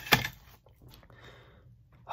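Bubble wrap rustling as it is handled, with a sharp crinkle just after the start, then fainter rustling.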